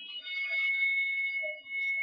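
A steady high-pitched electronic tone, like an alarm or buzzer, with a few higher tones above it that fade out about one and a half seconds in while the main tone holds on.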